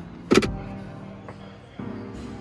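Hard plastic knock of a removable centre-console tray being slid across its bin, one sharp clack about a third of a second in, over background guitar music.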